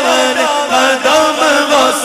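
A male naat reciter chanting a devotional manqabat in praise of Abdul Qadir Jilani, the melody held on long notes that slide up and down.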